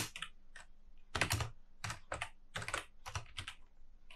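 Typing on a computer keyboard: about a dozen separate keystrokes in irregular clusters, some in quick pairs, as a few words are typed.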